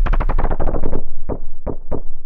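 Kick drum sample in FL Studio's piano roll, triggered again and again as the mouse runs down the piano-roll keyboard, each hit pitched lower than the last. The hits come rapidly, about eight in the first second, then thin out to three spaced, duller hits.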